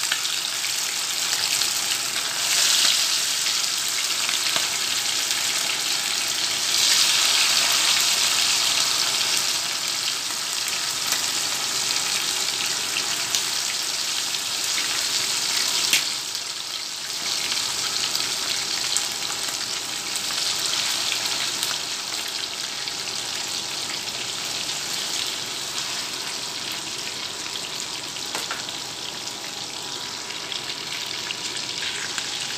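Chicken pieces deep-frying in hot oil in a frying pan, a continuous sizzle that swells louder in surges early on as more pieces go into the oil. There is a sharp tick from the spatula about sixteen seconds in, and the sizzle settles a little quieter after it.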